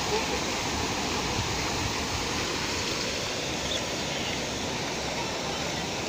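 Steady rush of water spraying and splashing from the fountains of a waterpark splash-pad play structure.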